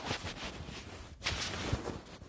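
Handling noise from a phone being moved around in the hand: rubbing and rumble on the microphone, with a few soft knocks, the loudest a little past the middle.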